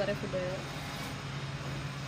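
A woman's voice for a moment at the start, then a steady low background hum with no voice.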